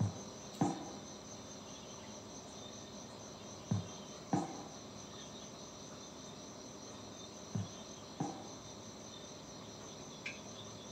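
Insects chirping in a faint, steady high trill. Three times, about every four seconds, comes a pair of short falling blips about half a second apart.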